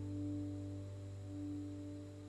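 Soft background music: sustained low notes held steadily, with no speech.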